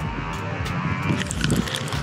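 Wind buffeting the microphone in a steady rumble.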